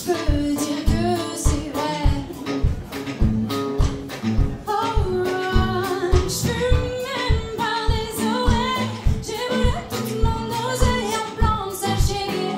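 A woman singing a soul song live into a microphone, holding long, bending notes, backed by a band with acoustic guitar and drums keeping a steady beat.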